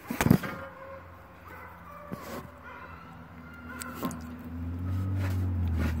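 A sharp knock a quarter of a second in, then a few faint clicks of metal parts being handled, with a low hum that grows louder near the end.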